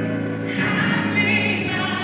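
Gospel song with choir voices singing held notes over accompaniment.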